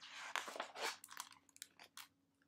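Pages of a hardcover picture book being turned: a faint paper rustle for about a second, then a few light clicks and taps as the book is handled.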